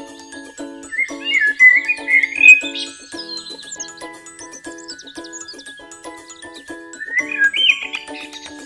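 Background music: steadily strummed ukulele chords with a high warbling lead melody, loudest about a second in and again near the end.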